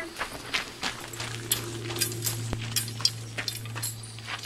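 Footsteps and a dog cart's spoked wheels crunching and clinking on gravel as a large dog pulls the cart through a turn, in many irregular sharp crunches.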